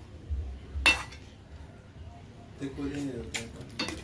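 A spoon stirring thick gravy in a cooking pot, knocking against the pot's side: one sharp clink about a second in and a couple of lighter ones near the end.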